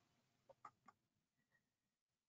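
Near silence: a pause in the speech, with a few very faint ticks.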